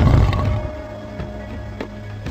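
A lion's growl at the very start, loud and rough, fading within about half a second into background music with a steady percussive beat.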